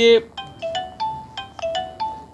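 A short electronic melody of brief, clear-pitched notes, about three a second, stepping up and down in pitch.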